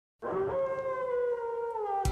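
A wolf howling: one long call that rises briefly at its start, then holds and slowly falls in pitch.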